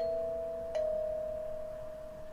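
Wooden kalimba tuned in B, two metal tines plucked in turn: one note at the start and a slightly lower one about three-quarters of a second later that rings on and slowly fades.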